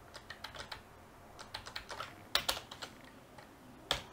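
Typing on a computer keyboard: irregular keystrokes in short runs, the loudest a pair of clicks about two and a half seconds in and one more near the end.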